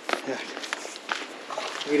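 Footsteps on a hard courtyard floor: a few short, sharp steps at an uneven pace.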